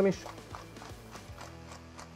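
Hand-turned pepper mill grinding peppercorns: a run of faint, irregular crunching clicks, with soft background music underneath.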